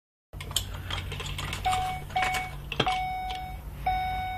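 Ford E450 dashboard warning chime beeping repeatedly, about once a second, starting a little over a second and a half in. Clicks and knocks sound over a steady low hum in the first part.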